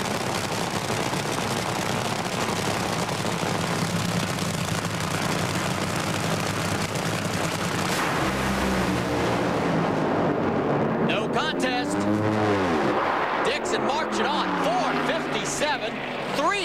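Two supercharged nitromethane Top Fuel dragster engines running loud and steady at the start line, then a sharp crack about halfway through as they launch into a full-throttle pass. Near the end the sound thins, with engine pitch sweeping up and down as the cars finish and come off the throttle.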